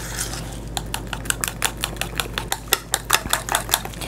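Fork whisking a wet mixture of beaten egg, barbecue sauce and seasonings in a small bowl, ticking against the bowl in quick, regular clicks, about six a second, that start just under a second in.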